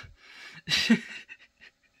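A man's short, breathy laugh, one loud puff of breath about a second in after a softer exhale.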